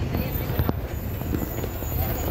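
Running noise of a bus heard from inside the cabin while it drives: a steady low engine and road rumble with a few brief rattles.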